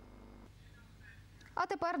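Faint low hum for about a second and a half, then a woman starts speaking.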